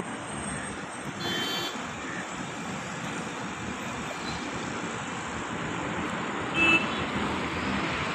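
Busy road traffic heard from above: a steady rush of passing cars, buses and trucks, with two short horn toots, a faint one about a second in and a louder one near the end.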